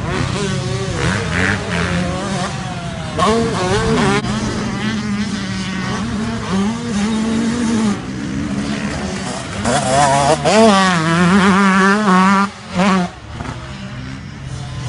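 Yamaha motocross bike engines revving on a dirt track, the pitch climbing and falling with throttle and gear changes. One bike is loudest about ten seconds in, then the sound drops away sharply a couple of seconds later.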